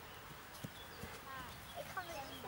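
Faint dull thumps of a child landing on an in-ground trampoline mat, two knocks about a second apart, with high children's voices calling out in the second half.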